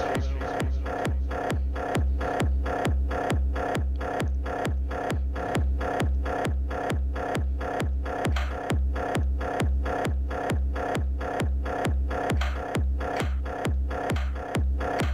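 Electronic chiptune music played live on Teenage Engineering Pocket Operator pocket synthesizers: a steady four-on-the-floor kick about two and a half beats a second, with sharp clicky hits between the beats and short falling-pitch blips.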